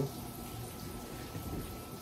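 Quiet room tone: a faint steady hiss with a thin, steady high hum and no distinct events.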